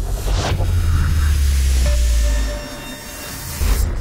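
Horror-trailer score and sound design: a deep bass rumble that swells for about two seconds and fades, then a rising whoosh near the end that cuts off suddenly.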